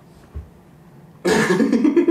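A quiet stretch with one soft low thump, then a man's loud, breathy vocal outburst of quick pulses lasting about a second near the end.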